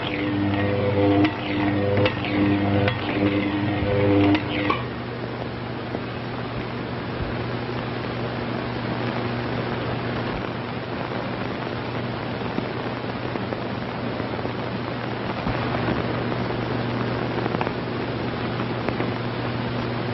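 Laboratory electrical apparatus in a 1930s film soundtrack: a pulsing, pitched buzz that stops about five seconds in, leaving a steady low hum under hiss.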